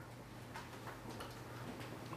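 Faint light ticks and taps of a stylus writing on a tablet screen, over a low steady hum.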